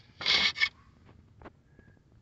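A short scrape as a hand rubs against the radiator and latch parts, ending in a click, followed by a few faint ticks.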